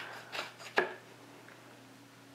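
Kitchen knife cutting into a Tetra Pak carton of silken tofu on a cutting board: two short cuts, the louder one just under a second in.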